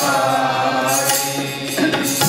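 Sikh kirtan: voices singing a devotional hymn over harmonium drones and melody, with tabla strokes.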